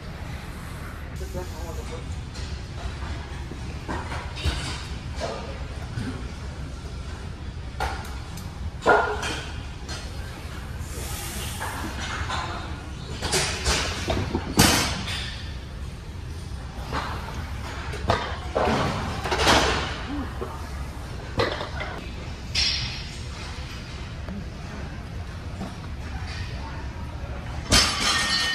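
Weight-room sound: indistinct voices and bursts of shouting over a steady low hum of the room, with a few sharp knocks, one loud one about nine seconds in.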